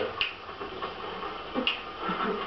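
Two short, sharp snaps about a second and a half apart.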